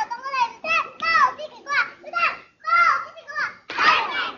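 A small child's high voice chanting a political slogan in Chinese, in short shouted phrases; near the end a group of children joins in, shouting the slogan together.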